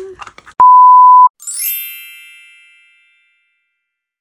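An edited-in sound-effect beep: one loud, steady, high pure tone lasting about two-thirds of a second that cuts off sharply. It is followed at once by a bright chime with a quick sparkling upward shimmer that rings and fades away over about two seconds.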